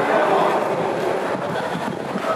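Audience applause mixed with crowd voices, slowly tapering off.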